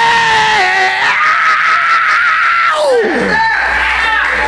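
A preacher's long, high-pitched scream held into a microphone over the church PA, climbing in pitch about a second in and sliding down to break off near three seconds. A low hum comes in just after.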